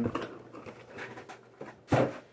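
Light handling noise from a cardboard diecast box being held and moved, ending in one sharp knock.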